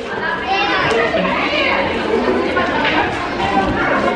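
Several voices overlapping: children playing and calling out, with people chattering.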